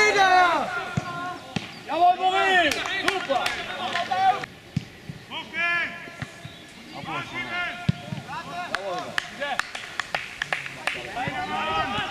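Footballers shouting calls to each other across an open grass pitch, with sharp short thuds of the ball being kicked scattered among them, one louder thud about two thirds of the way through.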